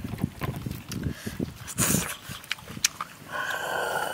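Someone eating grilled snails up close: wet mouth and chewing noises with small clicks of shell and skewer, then about three seconds in a long, loud slurp as a snail is sucked out of its shell.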